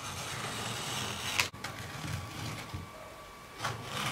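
Snap-off utility knife blade drawn along a steel ruler, cutting through cardboard with a scratchy rasp, with two sharp clicks, one about a second and a half in and one near the end.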